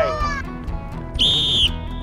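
One short sports-whistle blast, a steady high tone about half a second long, a little past the middle: the coach's signal for the runner to start his next stride.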